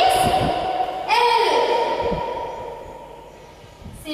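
A woman's voice singing drawn-out notes, with a long held note starting about a second in and fading away near the end.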